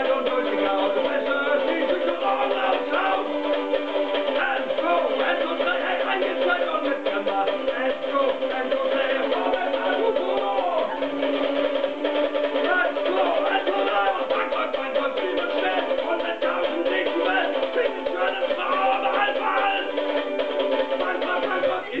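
Two ukuleles strummed fast and hard in steady chords, with a man singing along to a punk-style song played at top speed.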